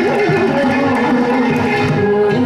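Live Carnatic classical music: a wavering melodic line over a steady drone, with frequent percussion strokes from the ghatam clay pot and drums.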